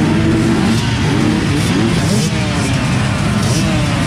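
A large field of off-road motorcycle engines running together on a start grid, many blipping their throttles so that overlapping engine notes rise and fall in a dense, loud wall of sound.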